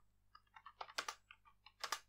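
Typing on a computer keyboard: a run of faint, irregular key clicks, with two louder keystrokes about a second in and near the end.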